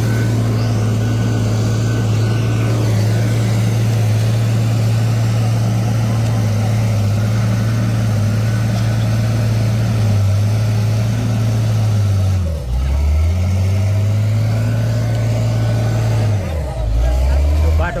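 Heavy diesel vehicle engine running steadily at one pitch close by. Its pitch drops briefly about twelve and a half seconds in and again shortly before the end.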